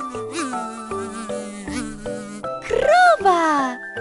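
Cartoon buzzing-fly sound effect over light children's background music; the buzz is loudest about three seconds in, sweeping up and back down in pitch once.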